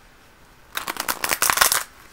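Tarot cards being shuffled: a rapid run of papery flicks that starts a little under a second in and lasts about a second.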